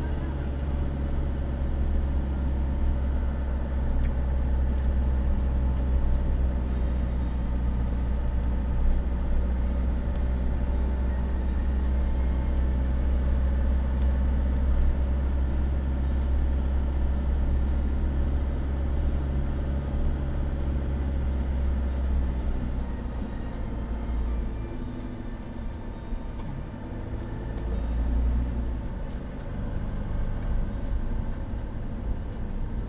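A car's engine and tyre noise at low speed, picked up from inside the cabin by the dashcam microphone. It is a steady low drone that fades from about three-quarters of the way through and comes back near the end.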